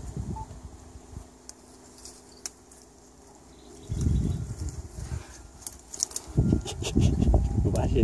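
Dry branches and brush crackling, with scattered sharp snaps, as a man grapples in a pile of cut branches. Low rumbling bursts of noise come in about four seconds in and again from about six seconds.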